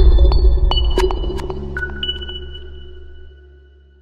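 Electronic logo sting: a deep bass hit, then a series of high, sonar-like pings that ring on and fade out.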